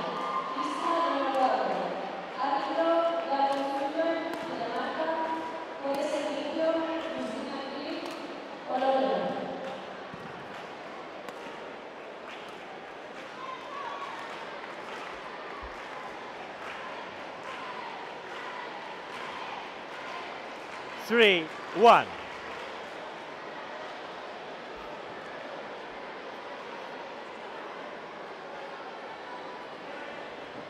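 Badminton play in a large indoor hall: sharp shuttlecock hits and voices during the first nine seconds, then a steady hum of hall noise. About two-thirds of the way through, two loud shouts that drop steeply in pitch, a second apart.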